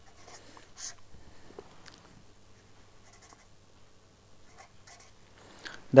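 Pen scratching on paper as a word is handwritten and then underlined: a series of short, faint strokes, with one louder stroke about a second in.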